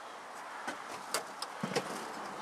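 Quiet outdoor background hiss with a few faint clicks and taps scattered through the second half.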